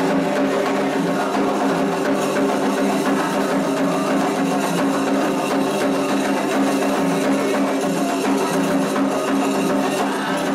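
Candomblé ritual music: atabaque hand drums playing a steady rhythm under sustained group singing.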